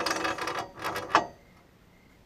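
Steel log stop on a sawmill bed scraping and rattling in its socket as it is turned and lowered, ending in one sharp metal clunk just after a second in.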